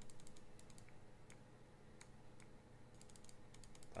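Faint computer mouse button clicks, quick and repeated, coming in rapid runs that thin out in the middle and pick up again near the end.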